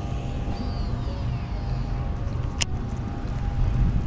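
Wind buffeting the microphone in a steady low rumble, with a baitcasting reel's spool whine falling in pitch as the cast goes out and one sharp click about two and a half seconds in.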